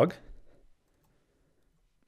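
The last word of a man's speech fading out in the first half second, then near silence: room tone.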